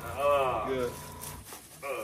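A man groans on a long exhale, about a second long, as hands press down on his upper back during a chiropractic thoracic adjustment. A low hum in the background cuts off about a second and a half in.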